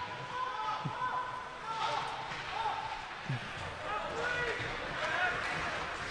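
Indoor ice rink ambience during live play: faint, echoing voices of players and spectators with a few dull thuds from the play on the ice.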